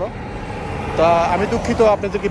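A steady rush of highway traffic, with a man's voice talking over it during the second half.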